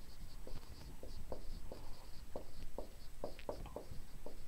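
Dry-erase marker writing a word on a whiteboard: a quick, irregular run of short marker strokes.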